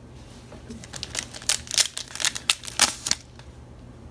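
A hand working through a small stack of Pokémon trading cards: a quick run of about ten crisp paper-and-foil rustles and flicks, starting about a second in and stopping a little after three seconds.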